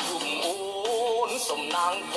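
A song playing: a singer holding long notes that waver slightly, over instrumental backing.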